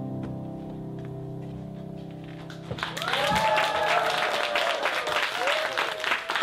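Final chord on an electric stage keyboard held and fading away, then audience applause breaking out nearly three seconds in, with voices cheering over the clapping.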